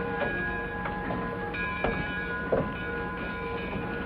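Train at a station: a steady hiss with a few sharp clanks and a sustained tone underneath.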